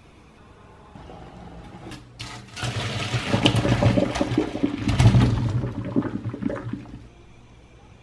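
Diced potatoes tipped from a glass bowl into a frying pan, a loud, dense rush of clattering pieces that builds after a couple of quieter seconds, peaks, and dies away before the end.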